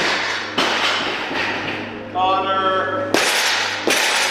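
A barbell loaded with bumper plates is dropped onto the lifting platform: sharp cracks and thuds as it lands and bounces, with a loud impact again about three seconds in.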